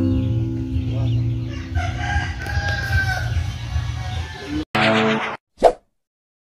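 A rooster crowing over background music. The music cuts off abruptly near the end, followed by a short burst of sound and a brief blip.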